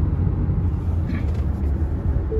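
Car cabin road noise at highway speed: a steady low rumble of tyres and engine, heard from inside the moving car.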